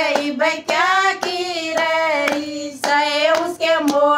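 A group of women singing a Hindu devotional bhajan, with hand claps keeping the beat at about two claps a second.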